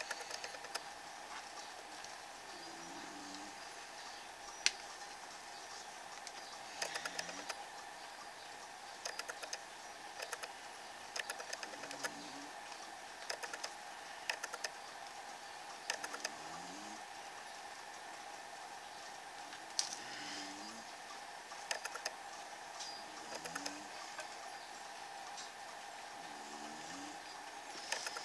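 Black marker scratching and tapping on journal paper in short strokes, drawing a squiggly line border, in little bursts every second or two. A faint steady hum sits underneath.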